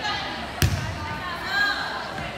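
A volleyball struck once, a single sharp slap with a low thud, about half a second in, in a large gym.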